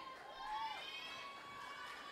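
Audience cheering from the seats, several high voices overlapping in drawn-out whoops and shouts of encouragement, one rising and falling call about half a second in.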